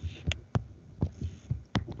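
A handful of soft, irregular clicks and taps from a pen stylus on a writing tablet as a formula is written by hand.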